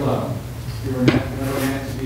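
A single sharp knock about a second in, in a short break between stretches of voices singing a hymn.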